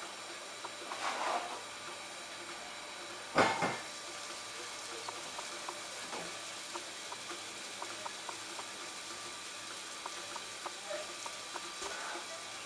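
SR Merchant Navy class steam locomotive 35028 Clan Line standing and simmering: a steady soft hiss of steam with faint crackling, and a single loud thump about three and a half seconds in.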